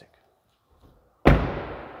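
A car's rear passenger door slammed shut once, about a second in, with a tail that fades over most of a second.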